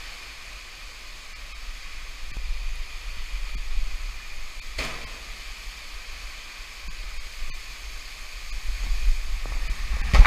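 Steady hiss of flowing water in a narrow rock gorge, under a low rumble of wind and handling on the camera that swells a couple of seconds in and again near the end. A single sharp knock a little before five seconds in.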